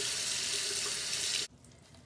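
Water running steadily from a sink tap, shut off abruptly about one and a half seconds in.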